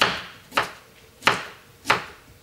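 A kitchen knife cutting food on a cutting board, four separate strokes about two-thirds of a second apart.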